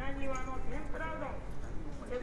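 Street ambience of passersby talking close by, with footsteps on the pavement and a low rumble of the street beneath.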